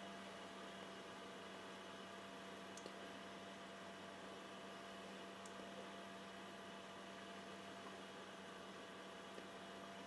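Faint steady electrical hum with low hiss: room tone, with a couple of tiny ticks about three and five seconds in.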